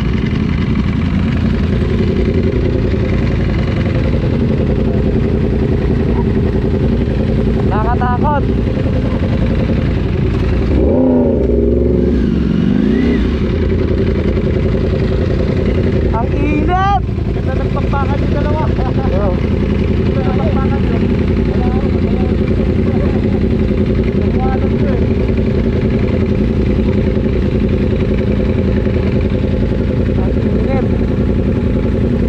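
Ducati Panigale V4 Speciale's V4 engine idling steadily in neutral while stopped, with a second sportbike idling alongside. Short bits of talk are heard a few times.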